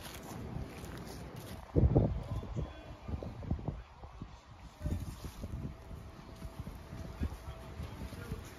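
Wind buffeting the microphone in irregular low rumbling gusts, the strongest about two seconds in and another spell around five seconds.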